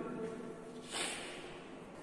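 A man's short breath noise about a second in, over faint room noise.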